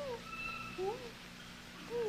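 Infant rhesus monkey giving short, wavering coo calls, about three in two seconds. These are the distress calls of a frightened baby that finds no comfort.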